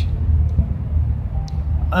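Low steady rumble, with a faint short click about one and a half seconds in.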